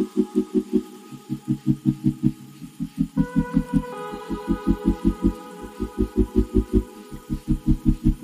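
Background electronic music: a fast pulsing bass, about six beats a second in short runs with brief gaps, under sustained synth chords that change about three seconds in.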